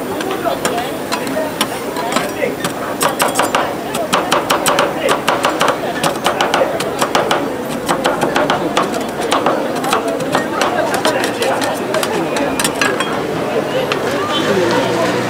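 Two metal spatulas chopping an Oreo cookie on the steel cold plate of a rolled-ice-cream stand: rapid metallic tapping and scraping, busiest through the middle.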